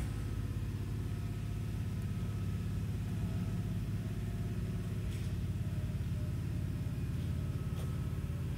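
A steady low mechanical hum that holds level and pitch throughout, with no nail firing or other sudden sounds.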